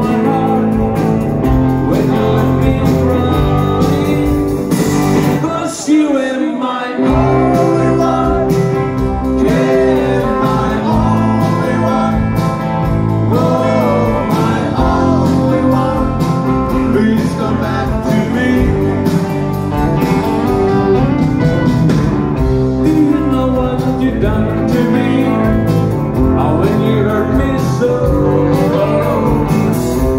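Live rock band playing loudly: two electric guitars, bass guitar and drums, with sung vocals. About six seconds in the bass and drums drop out for about a second before the full band comes back in.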